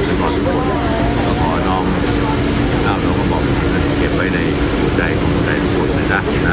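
A loud steady mechanical drone with a constant low hum, engine-like, with voices talking faintly over it.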